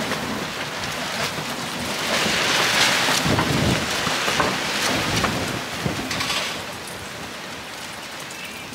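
A gust of wind: a rushing hiss that builds about two seconds in and dies away near the end.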